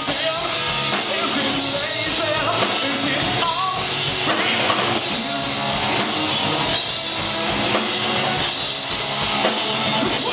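Live rock band playing loud with electric guitar and a drum kit with crashing cymbals, the sound dense and unbroken.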